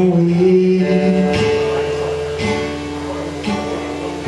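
Acoustic guitar strummed in slow chords that ring out, with a new stroke about once a second. A sung note is held over the first second or so before the guitar plays alone.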